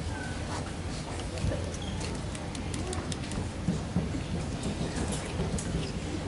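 Crowd ambience of a seated audience and band: low background chatter and rustling, with many light clicks and knocks scattered throughout.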